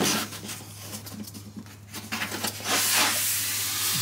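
Thin blue sanding pad rubbed by hand back and forth along the grain of a hollow-body guitar's unfinished wooden top: a dry, hissy scratching, fainter for a couple of seconds and louder again near the end. A steady low hum runs underneath.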